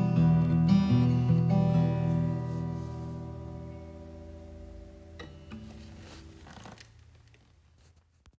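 Acoustic guitar fingerpicked: a few last plucked notes, then the final chord left ringing and slowly fading away. A single soft note is plucked about five seconds in and also dies away.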